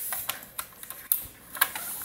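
A handful of irregular light clicks and knocks from hands handling things on a workbench.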